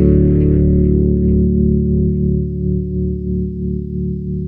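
Electric bass guitar chord ringing out: several notes struck together just before, held and slowly fading.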